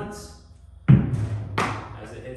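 Tennis ball thrown against a wall and caught: two sharp thuds about a second in, a little over half a second apart, each with a short ring in the room.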